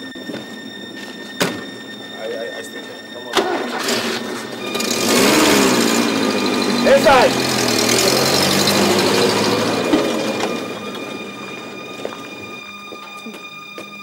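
Two sharp knocks, then a car engine running up loudly as the car pulls away, with a short squeal about seven seconds in; the sound fades off over the last few seconds.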